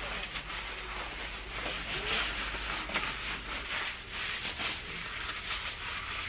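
Nylon windbreaker pants rustling as they are pulled on and adjusted, an irregular scratchy rustle of fabric.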